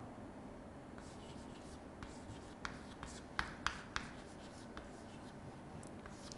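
Chalk writing on a chalkboard: faint scratching of the chalk stick, with a handful of short sharp taps as the letters are formed, between about two and five seconds in.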